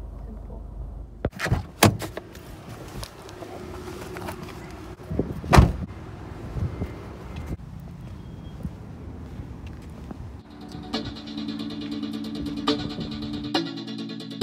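Car cabin rumble with a few sharp thunks in the first six seconds, the loudest about five and a half seconds in: car doors being opened and shut. Background music with a steady beat comes in about ten and a half seconds in.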